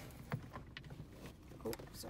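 Light plastic handling sounds with a couple of faint clicks as a mirror dash cam is fitted over a car's rear-view mirror, plus a brief murmured voice near the end.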